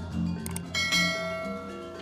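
Background music with low sustained notes, and a bell-like chime struck about three-quarters of a second in that rings on and fades.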